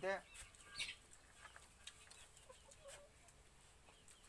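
Domestic chickens clucking faintly, with one short, louder pitched call right at the start and scattered small chirps after it.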